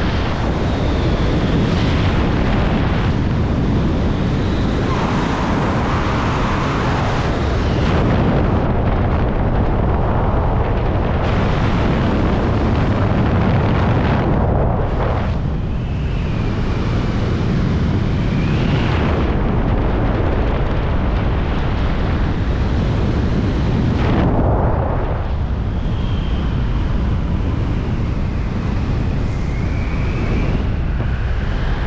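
Loud, steady wind noise buffeting a helmet-mounted camera microphone as a skydiver descends under an open parachute canopy, with faint whistling now and then.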